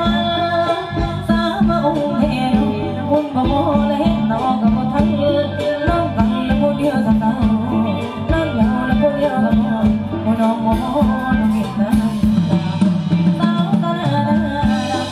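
Live band playing Thai ramwong dance music with a singing voice, a steady beat, conga drums and electric guitar.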